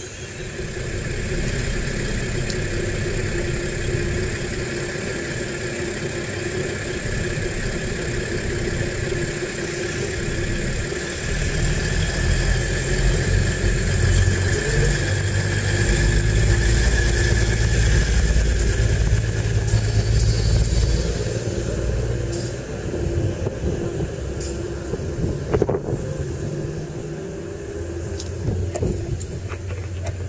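DB class 605 ICE-TD diesel-electric multiple unit pulling away from the platform: its underfloor diesel engines run under load with a steady whine. A low rumble builds to its loudest about halfway through as the train gathers speed past, then eases, with a few sharp clicks near the end.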